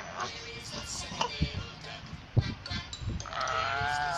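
A baby's voice: one long, wavering vocal sound near the end, while he mouths a teether. Before it, a few short knocks and rustles, the sharpest about two and a half seconds in.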